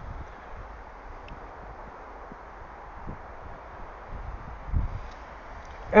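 Wind rushing over the microphone in a steady haze, with a few low gusts buffeting it.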